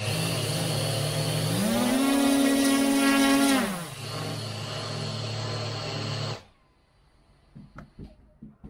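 Four Racerstar 2216 810 kV brushless motors with Gemfan 10x4.5 props on a hand-held F450 quadcopter, running on initial, untuned PID and filter settings. They spin up to a steady hum, rise in pitch as the throttle goes up about a second and a half in, hold for about two seconds, then drop back, and stop suddenly about six and a half seconds in.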